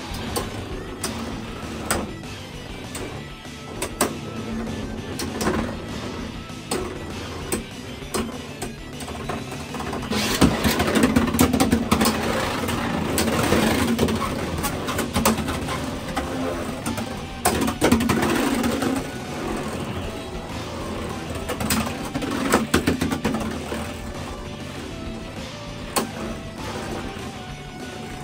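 Beyblade X spinning tops whirring and clacking against each other as they battle in a stadium. The sharp hits come at irregular intervals and are busiest from about ten seconds in until about nineteen, over background music.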